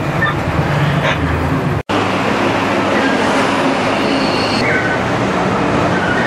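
Steady rumble of a bus in motion, engine and road noise, cut off abruptly about two seconds in. It is followed by a steady noisy roar of street traffic.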